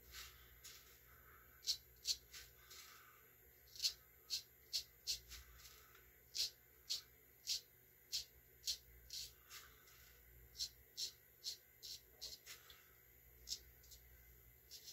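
Straight razor scraping through lathered beard stubble in short, faint strokes, roughly one or two a second in runs with brief pauses.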